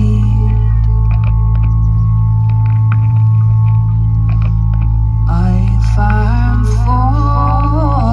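Ambient drone music played live through a PA: a steady low hum under long held tones, with scattered faint clicks. About five seconds in, a wordless, wavering vocal line comes in over the drone.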